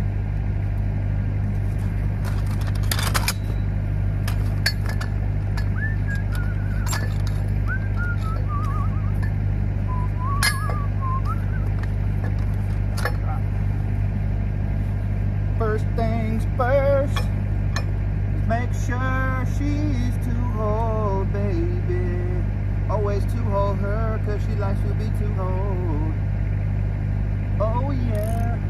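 An engine runs steadily at idle, a constant low drone throughout. Now and then steel pipe fittings clink as they are handled and set into a pipe chuck.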